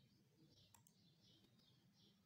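Near silence with two faint, quick computer-mouse clicks close together a little under a second in.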